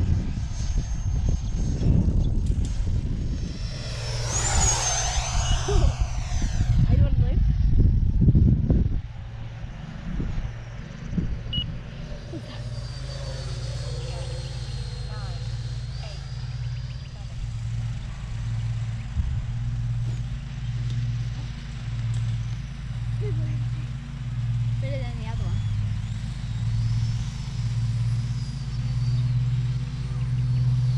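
A 90mm electric ducted-fan model F-22 jet passing by with a high whine that sweeps and falls in pitch about four seconds in, over heavy wind buffeting on the microphone. Later a faint high fan whine and a steady low hum that pulses about once a second.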